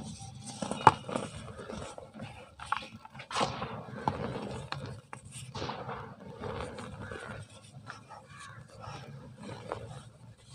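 Soft, dry pure-cement block crushed and crumbled by hand, with irregular crunching and crackling as the pieces break and powder falls onto a pile; one sharp crack about a second in is the loudest. Later the hands press and squeeze into the loose cement powder with a soft, gritty rustle.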